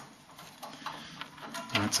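A pause in a man's speech: quiet room tone with a few faint, short clicks, then his voice starts again near the end.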